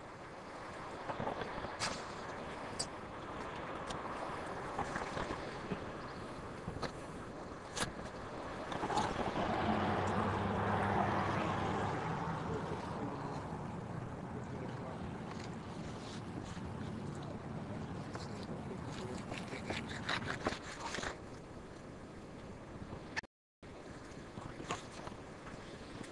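Steady background noise with a low hum that swells about nine seconds in and slowly fades, with scattered light clicks and knocks. The sound cuts out briefly near the end.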